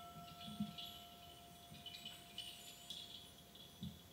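Faint, soft background music: a held note with light, chime-like tinkling above it.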